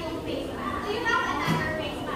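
Young children's voices chattering and talking in a classroom, with a short knock about one and a half seconds in.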